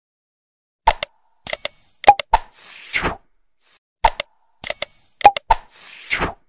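Subscribe-button outro sound effects: a sequence of sharp clicks, a bright bell-like ding and a whoosh, played twice in a loop about three seconds long, starting about a second in.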